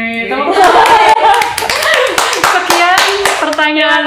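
Several people clapping their hands, with loud voices over the claps; the clapping stops near the end and a sing-song voice carries on.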